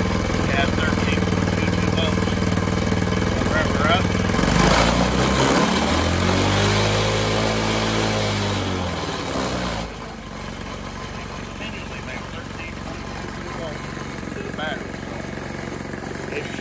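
Small single-cylinder four-stroke engine of a Tao Tao 110 ATV idling steadily. About four seconds in it is revved up, held at higher revs, and brought back down. Its sound stops about ten seconds in, leaving a quieter background.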